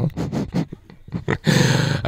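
Brief low voice fragments, then about one and a half seconds in a man's voice holds a drawn-out, low, gravelly hesitation sound before speech resumes.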